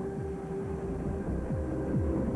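Electronic soundtrack music: a held tone under a quick run of low, falling pitch sweeps, about three or four a second.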